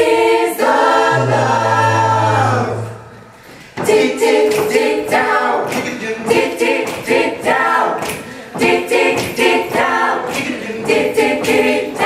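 Mixed-voice a cappella group singing: a held chord over a low bass note, a short break about three seconds in, then rhythmic backing syllables over beatboxed vocal percussion.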